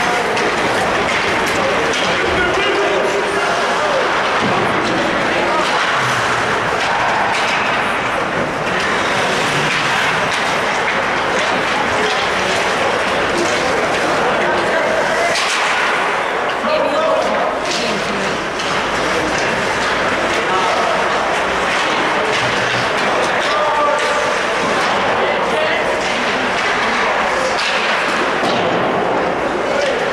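Live ice hockey play in an indoor rink: a steady, echoing din of indistinct shouting and chatter, broken by sharp knocks and clacks of sticks and puck and the odd thud against the boards.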